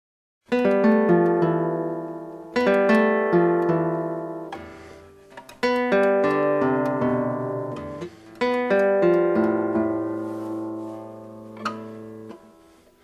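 Nylon-string classical guitar playing slow close-voiced chords, each built from adjacent scale notes. Each chord is plucked, then left to ring and die away, with a new chord every two to three seconds after a short silence at the start.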